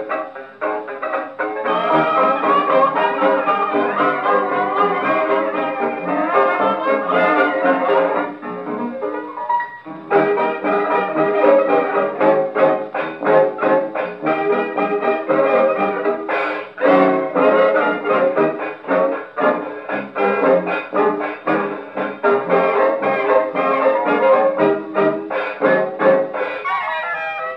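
A 1920s hot-jazz dance band's instrumental chorus, with brass leading, played from a 78 rpm shellac record on a 1926 Victor Orthophonic Victrola Credenza with a steel needle. The sound is thin, with no deep bass or high treble, and there is a brief lull about nine seconds in.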